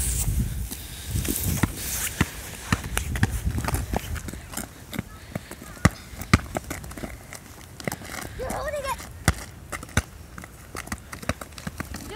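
A ball being kicked and bouncing on asphalt among children's running footsteps, heard as a scattered series of sharp taps. A child's short vocal sound comes in around the middle.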